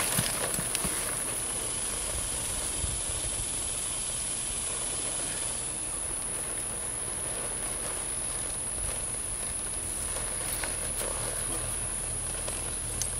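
Outdoor ambience around a horse being ridden and mounted on sand: a steady hiss and a constant high-pitched whine, with a few faint knocks of hooves and tack near the start.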